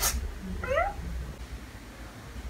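A single short cat meow about half a second in, after a sharp click at the very start.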